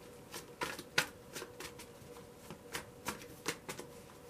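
A deck of tarot cards being shuffled by hand: a run of irregular soft slaps and clicks as the cards are worked through.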